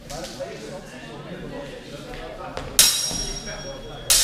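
Steel training swords striking together once, sharply, about three-quarters of the way in, with a short metallic ring after the hit. Quieter voices before it.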